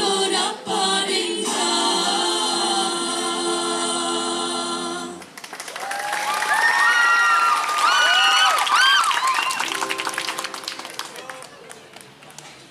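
A school vocal group sings a West Sumba regional song in close harmony, holding a final chord that breaks off suddenly about five seconds in. Applause follows, with high gliding whoops and cheers, and it fades toward the end.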